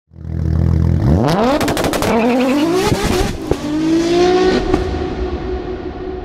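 A car engine revving up hard, its pitch climbing three times and dropping back between climbs like gear changes, with a burst of sharp crackles between one and two seconds in. It then settles into a steady tone that fades out.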